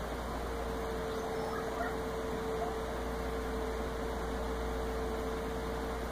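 A steady electrical hum over room noise, with a few faint, short rising chirps now and then.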